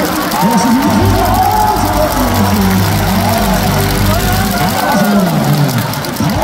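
Baseball stadium crowd: many voices at once over music from the public-address system, with a steady low hum from about a second in until nearly five seconds.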